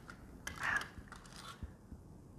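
A small metal bank home safe (money box) being unlocked with a key and opened by hand: light metallic clicks and a short scrape of metal on metal about half a second in, then another click further on.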